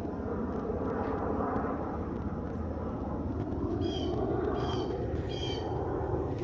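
Steady low rumble of distant traffic, with a bird giving three short calls in quick succession about four seconds in.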